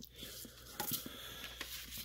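A sheet of plain printer paper being folded and creased by hand on a countertop: faint rustling with small crinkly ticks as the fold is pressed down.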